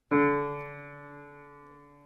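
Upright piano note struck once, a D left to ring and slowly die away; the note is about a quarter tone flat and is about to be tuned up to pitch.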